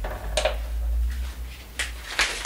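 Two light clicks, one shortly after the start and one near the end, as a plastic mixing bowl is set on a digital kitchen scale, over a steady low rumble.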